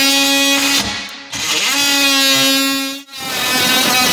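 Cordless DeWalt oscillating multi-tool cutting into a cabinet face frame's edge. It runs in three bursts with short pauses between them, each a steady, high buzz.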